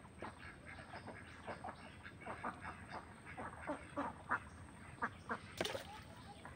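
Ducks quacking in many short, repeated calls. Near the end, a sharp splash as a hooked fish thrashes at the water's surface.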